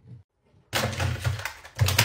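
Objects being picked up and set down on a nightstand as it is cleared: a quick run of clattering knocks starting almost a second in, louder again near the end.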